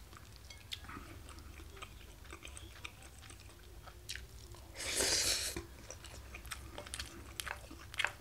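A person eating curry rice with a wooden spoon: chewing and small clicks of the spoon against a ceramic bowl. A louder, noisy mouth sound lasting under a second comes about five seconds in, just after a spoonful of rice is taken into the mouth.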